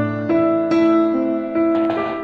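Background piano music: a slow, gentle melody of single notes and soft chords, a new note struck about every half second and left to ring.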